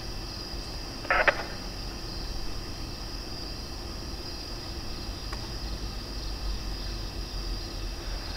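Steady high-pitched chorus of night insects, with a brief crackle from a scanner radio about a second in.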